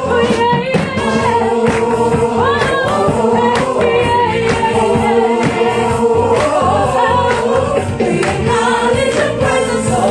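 Gospel choir singing with instrumental accompaniment and percussion.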